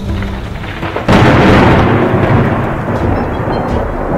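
A loud thunder clap sound effect breaks in suddenly about a second in, then rumbles on and slowly fades.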